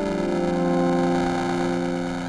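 Sustained synth pad chord from a Novation Peak, held steady and played through the Empress Echosystem delay pedal's granular mode. Grain density and grain size are turned all the way down, which makes it sound like a digital buffer overflow or DAT dropouts.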